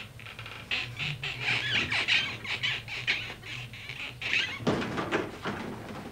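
Squeaking, scraping and rustling of sofa cushions and upholstery as a person shifts and drags his body across them. Near the end comes a louder knock or bump.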